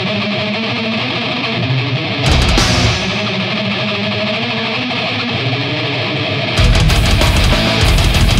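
Brutal death metal: a distorted electric guitar riff played alone, cut by a short full-band hit about two seconds in. Drums and bass come back in with the whole band near the end, and it gets louder.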